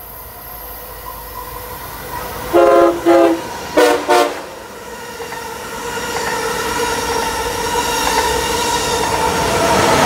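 Amtrak Acela Express high-speed electric trainset sounding its horn in four short blasts, two quick pairs, about three seconds in. The train then rushes past: its running noise and a steady electric whine build steadily, loudest near the end as the power car goes by.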